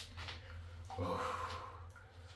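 A man sighing in a bath, one drawn-out voiced breath of about a second starting halfway through.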